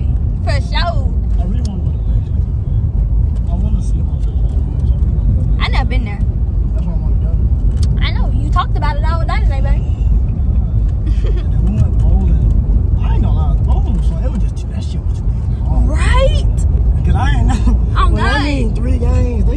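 Steady low rumble of a moving car heard from inside the cabin, with a few brief snatches of voices over it.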